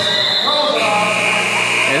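A steady high-pitched tone sets in just under a second in and holds to near the end, over people talking.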